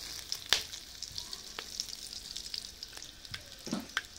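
Whole spices and bay leaves frying in hot oil in a pot: a low sizzle with scattered crackles and pops, the sharpest pop about half a second in.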